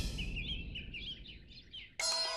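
Small birds chirping, a quick run of short high calls that fades away toward the end, over the low rumble of the preceding music dying out.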